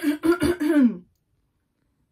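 A young man coughing and clearing his throat into his hand: a few short, voiced coughs, after which the sound cuts to dead silence about a second in.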